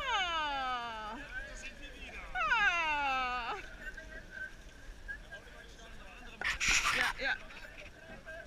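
A person's voice giving two drawn-out calls, each about a second long and sliding from high to low pitch, a little over a second apart. A short burst of noise follows about six and a half seconds in.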